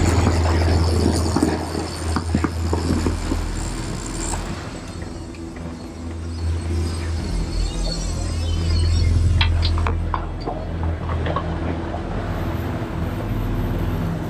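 Twin Honda 90 four-stroke outboard motors running with the boat under way, a steady low rumble mixed with wind and water rush, with background music underneath. A few sharp clicks come near the middle.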